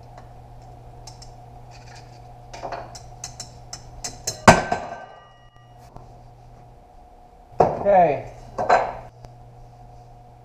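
Steel parts of a 68RFE automatic transmission's output drum and planetary gearset being handled and pulled apart: light clinks, then one loud metal clank about halfway through that rings briefly.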